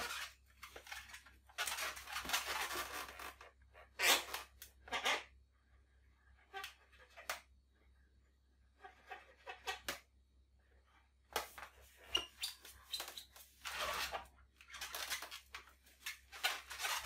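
Latex balloons rubbing and scraping as they are handled, with a felt-tip marker scratching on the balloon as a face is drawn, in short irregular bursts with quiet gaps between.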